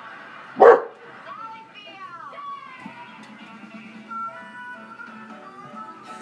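A basset hound gives one loud, sharp bark about half a second in, then a few short whines that glide up and down in pitch.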